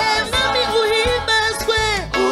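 A women's gospel choir singing, with lead voices on microphones over a steady low bass beat.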